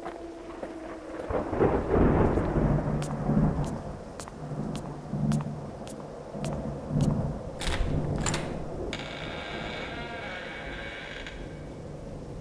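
Thunder rumbling over a noisy background of rain, with scattered sharp clicks and crackles. The thunder swells strongest a second or two in and then comes in several lower rolls.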